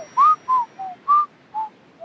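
A cartoon character whistling an idle little tune: five short, clear notes hopping up and down in pitch, over about a second and a half.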